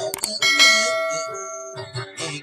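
Subscribe-button sound effect: a couple of mouse clicks, then about half a second in a bright notification-bell ding that rings out and fades over about a second.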